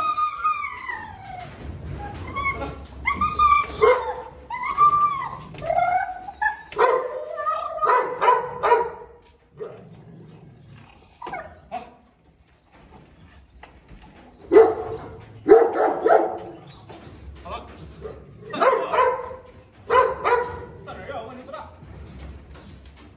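Presa Canario dogs whining and yipping with rising-and-falling pitch, then barking in short bursts three times, as they jump up begging for food held out of reach.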